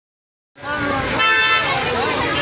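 Silence, then about half a second in, street crowd chatter and voices start abruptly; a vehicle horn toots briefly about a second in.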